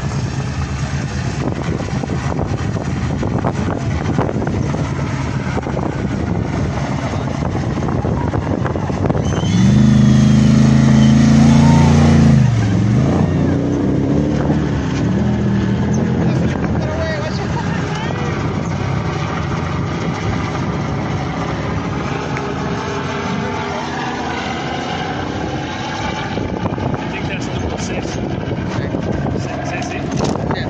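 Trophy truck's V8 engine racing past: a loud pass from about ten to twelve seconds in, its pitch falling sharply as it goes by. Quieter engine noise and spectators' voices carry on before and after the pass.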